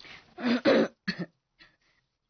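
A woman clearing her throat and coughing in about four short bursts, the middle two the loudest.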